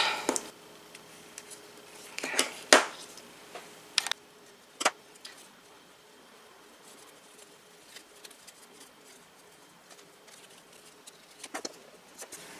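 Faint handling sounds of paper and fabric as a small rolled topper is worked onto a handmade paper bookmark: a few soft rustles about two to three seconds in, then a single sharp click just under five seconds in, and small ticks near the end.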